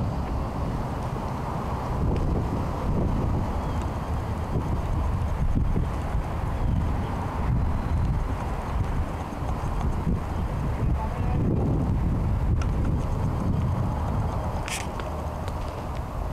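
Wind buffeting the microphone: a steady low rumbling noise that rises and falls, with one brief high-pitched sound near the end.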